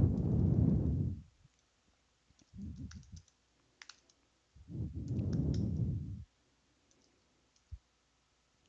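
Computer keyboard keys clicking sparsely as a terminal command is typed, with two low rushing swells, each about a second and a half long, at the start and about five seconds in.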